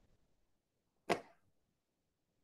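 A single short, sharp knock-like click about a second in, fading quickly, over faint room tone.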